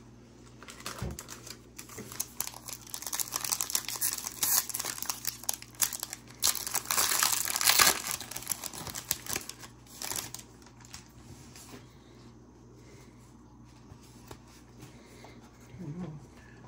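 Plastic trading-card pack wrapper crinkling and tearing as a pack is opened, a dense run of crackles and rustles that is loudest about seven seconds in.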